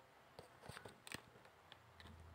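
Faint clicking from computer use, likely a mouse or touchpad: a quick cluster of clicks with light rubbing in the first half, then a single click near the end, over quiet room tone.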